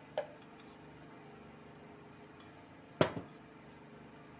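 A stainless steel mixing bowl with a wire whisk in it set down on the table about three seconds in: one sharp metal clank that rings briefly. A small clink comes just after the start.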